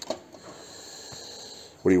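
A light knock as an old aluminium part is set down on a workbench, followed by a soft, steady hiss of breath lasting over a second.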